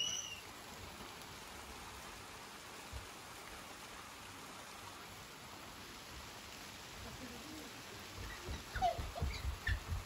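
Steady hiss of light summer rain falling, with a few brief faint calls and knocks near the end.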